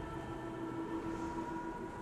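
Quiet ambient drone of held tones from a film score, steady throughout.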